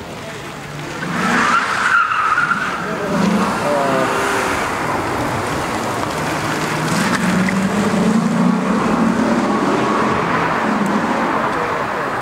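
Maserati Coupé's V8 engine running as the car turns, with a burst of tyre squeal about a second and a half in and the engine note rising later on. Crowd voices are mixed in.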